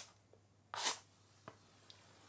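An oversized safety match struck once along the side of its box: a single short scrape just under a second in, then a faint click about half a second later as the match catches.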